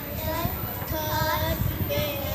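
Two young girls singing together into a microphone, drawing out long held notes.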